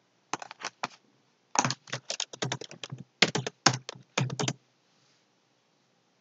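Computer keyboard being typed on: a few keystrokes, then two quick runs of typing, stopping about four and a half seconds in.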